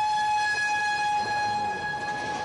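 Truck horn sounding one long, steady, unwavering note, from the red fire tanker driving past.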